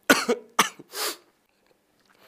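A man coughing: two quick coughs, then a short breathy burst about a second in.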